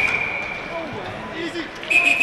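Ice hockey rink ambience during play: a low background haze with faint distant voices, under a steady high tone that fades out in the first second.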